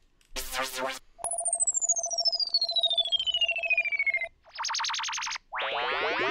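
Synthesized sound-effect one-shots auditioned one after another. First comes a short noisy hit. Then a whistle falls steadily in pitch over a steady pulsing tone for about three seconds, followed by a short buzzing tone, and near the end a sweep that glides in pitch.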